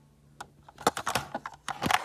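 A toy car being handled: a quick run of light clicks and rattles that starts about half a second in and grows denser toward the end.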